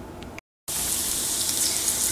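Chopped onions and garlic frying in hot oil in a pot, a steady sizzle. It starts after a brief dropout about half a second in.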